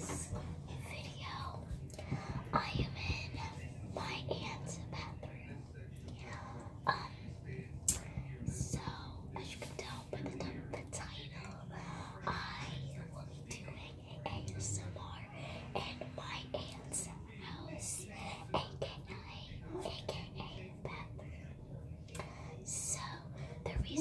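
A young girl whispering steadily, too softly for the words to be made out.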